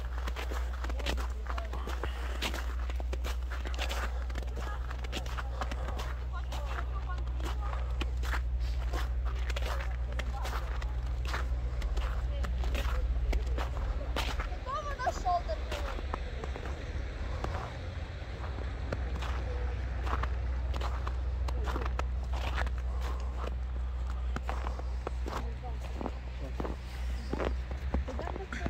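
Footsteps crunching on fresh snow at a walking pace: a run of short, sharp crunches over a steady low rumble.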